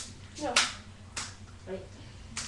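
Metal crutches struck against each other in a mock fight: sharp clacks, two of them about two-thirds of a second apart, with a child's short shout of "No" between them.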